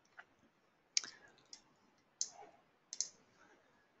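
Faint computer mouse clicks: about six short, sharp clicks at uneven intervals, two in quick succession about three seconds in.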